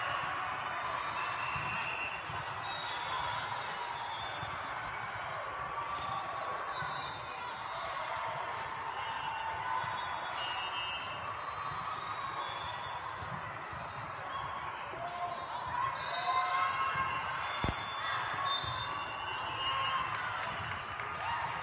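Echoing din of a multi-court volleyball tournament in a large hall: many overlapping voices, short high squeaks, and balls being hit and bouncing, with one sharp ball impact near the end.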